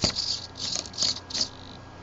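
Hobby servo whirring in short bursts, about three a second, as a potentiometer turns it back and forth, swinging a laser-cut wooden beak open and closed through a Scotch yoke. There is a sharp click at the very start.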